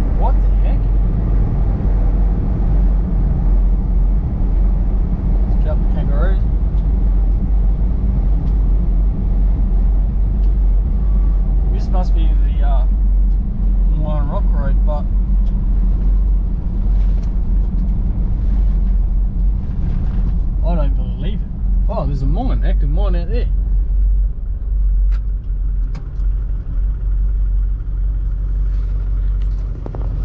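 Steady low engine and tyre drone heard from inside the cabin of a V8 Toyota LandCruiser driving on a dirt road. It eases a little in the last few seconds.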